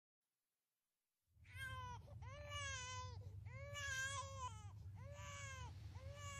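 Infant crying: a string of wailing cries, each rising and falling in pitch, starting after about a second and a half of silence.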